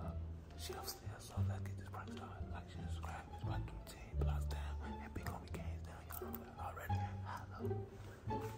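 Quiet background music with a deep, sustained bass line changing note every second or so, with faint whispered speech over it.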